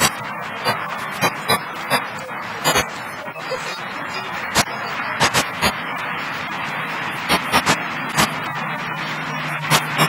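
Busy background ambience: a steady hiss of indistinct noise with frequent irregular sharp clicks or knocks, and a low steady hum coming in about seven seconds in.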